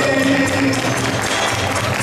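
A male singer's held sung note ends about a second in, over recorded backing music. Audience applause follows it.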